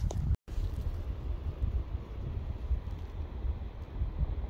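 Wind buffeting the phone's microphone over open lake water: an uneven, gusting low rumble, cut by a brief dropout to silence just under half a second in.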